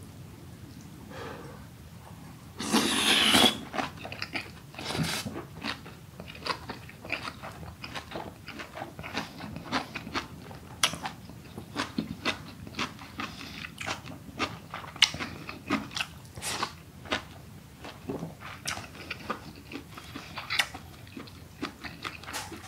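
Close-up chewing of braised aged kimchi and pork: wet, crunchy mouth sounds with many short clicks. A louder, noisier bite lasts about a second, around three seconds in.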